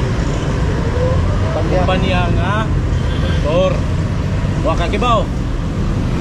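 Steady street traffic rumble, with a voice talking in a few short phrases through the middle.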